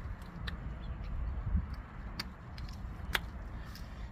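A few sharp, small clicks as plastic test-port caps are twisted off the brass test cocks of an RPZ backflow preventer and gathered in the hand, over a low steady rumble.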